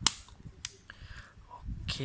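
Hinged back door of a 35mm film SLR camera pressed shut, closing with a sharp click, followed by a lighter click a little over half a second later.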